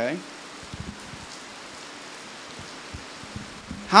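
A man's brief spoken "okay" followed by a pause filled with a steady, even hiss, with a few faint low ticks; his speech resumes at the very end.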